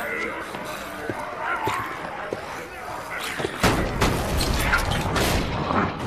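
Film fight soundtrack: wordless snarls and shouts over music, with scattered hits. About three and a half seconds in, a sudden loud, deep rumbling swell sets in, studded with crashing impacts.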